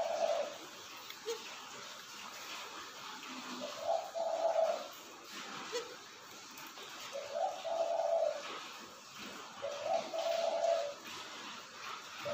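A dove cooing: a low, one-pitched coo about a second long, repeated about every three seconds. Faint small clicks from handling are heard under it.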